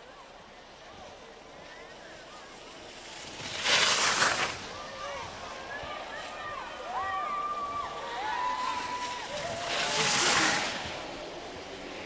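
Racer's skis carving on hard snow in giant slalom turns: two loud hissing scrapes, about 4 s and about 10 s in, with faint distant shouts and calls from spectators between them.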